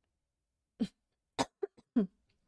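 A woman giving a few short, light coughs in quick succession, starting a little under a second in.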